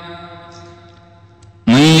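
A man's chanted Arabic recitation: the drawn-out end of a phrase fades away slowly over about a second and a half, then the voice comes back in loudly near the end.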